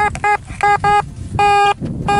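Makro Racer metal detector sounding its target tone as the coil sweeps over a buried coin: several short beeps, then one longer beep about a second and a half in, all at the same pitch. It is a clean, repeatable signal, the kind the digger says this detector gives on larger tsarist coins.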